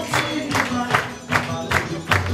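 Festa junina dance music: a steady beat of about three strokes a second under a bass line and a singing voice.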